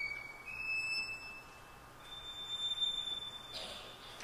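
Unaccompanied solo violin holding three long, very high, pure-sounding notes in turn, each higher than the last, the last the loudest, with a short scratchy bow stroke near the end.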